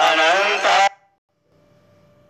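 Devotional aarti singing with sustained accompanying tones, with wavering melodic vocal lines, cuts off abruptly about a second in. A faint steady tone follows near the end.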